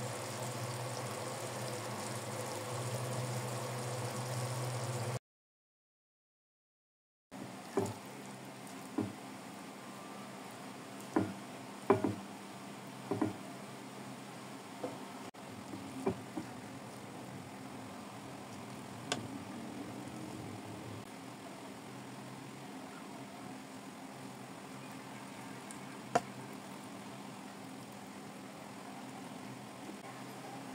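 Rice and tomato broth simmering in an aluminium pot on a gas stove, a steady bubbling noise with a low hum. After a short break, a plastic serving spoon knocks against a ceramic plate about nine times, at irregular intervals, as the rice is served. The loudest knocks come around twelve seconds in.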